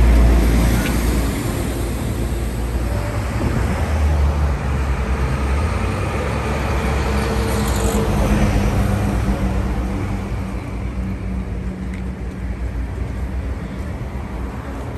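Road traffic: passing cars with a steady engine and tyre rumble, the deep rumble loudest at the start and easing off gradually.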